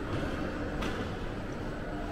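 Background noise of a large airport terminal hall: a steady low rumble with a faint hum, and one soft tick a little under a second in.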